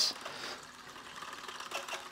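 Spinning fishing reel being cranked, its gears giving a quiet, steady whir as line winds onto the spool.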